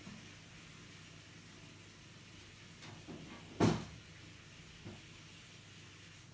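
Quiet room tone broken by a single short thump about three and a half seconds in, followed by a faint tap about a second later.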